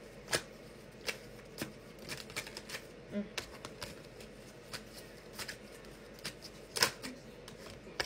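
A deck of tarot cards being shuffled by hand: a run of irregular soft card snaps and clicks, with one louder snap near the end.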